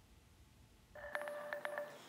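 Near silence for about a second, then a faint steady electronic tone with a few clicks, cutting off just before the end.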